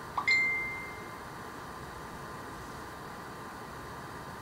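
A single short ding just after the start: a brief lower note, then a higher ringing tone that fades within about a second.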